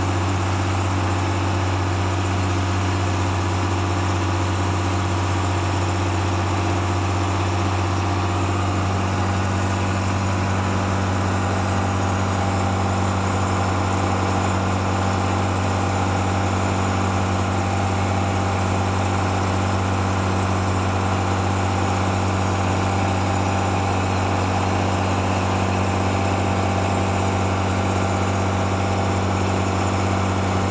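A wooden fishing boat's engine running steadily under way, a constant low drone. Its tone shifts slightly about nine seconds in.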